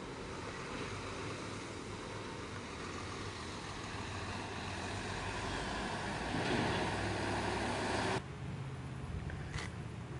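Road traffic passing, with a vehicle growing louder about six seconds in. The sound cuts off abruptly a little after eight seconds, leaving a quieter background with a low hum and a brief click near the end.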